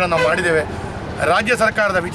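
A man speaking, with a short pause about halfway through in which a steady hum of road traffic is heard.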